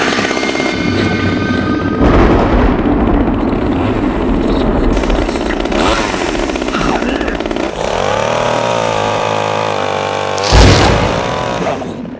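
Chainsaw running loud and steady, its tone changing to a more pitched, wavering note about eight seconds in, with a sudden louder burst near the end.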